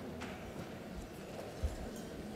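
Quiet conference-hall room tone with a faint click, then two short low thumps, the second and louder one near the end.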